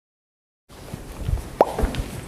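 Dead silence, then after about two-thirds of a second the room sound of an indoor recording cuts in, with a few soft low thumps and one sharp click with a brief falling squeak a little past halfway.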